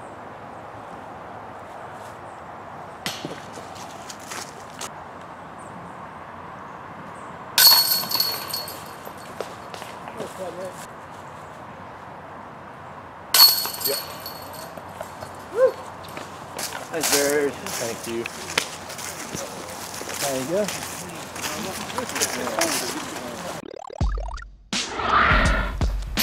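Discs hitting the chains of a metal disc golf basket twice, about six seconds apart, each a sudden metallic clash with a brief jingling ring. Low voices murmur in the last few seconds.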